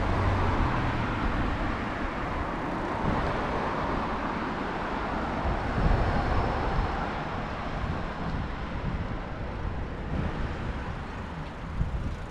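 Steady street noise of road traffic on the adjacent road, with wind buffeting the microphone of a camera carried on a moving bicycle. The traffic sound swells at the start and again about halfway through.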